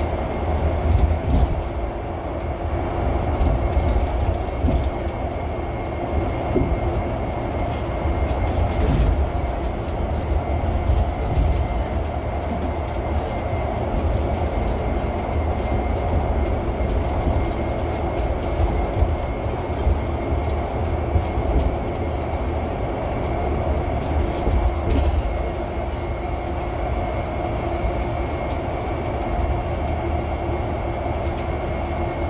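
Cabin noise of a Mercedes-Benz eCitaro G articulated electric bus under way: a steady low rumble of tyres and chassis with a faint steady high tone, and a few short knocks and rattles as it rides over the road.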